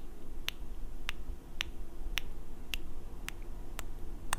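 Close-up kissing sounds made into a microphone: puckered lips making short, sharp kiss smacks, about seven in an even rhythm of roughly two a second.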